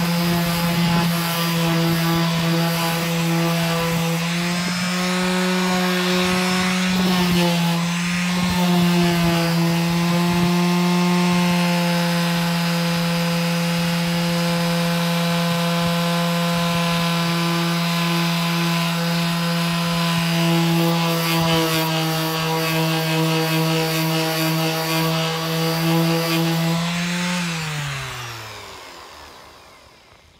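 Electric orbital finishing sander running steadily as it sands a resin-coated wooden cheese board. Near the end it is switched off and its motor winds down with a falling pitch.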